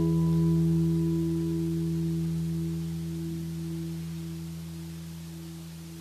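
The last chord of the communion music ringing out: a few steady, sustained tones that slowly fade away with no new notes.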